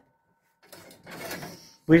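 Sheet-metal scraping and rattling from handling a kerosene heater at its open fuel-canister compartment, starting about half a second in and lasting just over a second.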